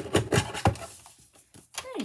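Paper trimmer clacking as a strip of patterned paper is cut off and the paper is lifted from it: several sharp clicks in the first second and another near the end.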